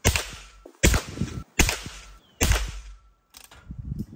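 Henry H001 lever-action .22 rimfire rifle firing four shots in quick succession, each a sharp crack less than a second apart, then a fainter click near the end.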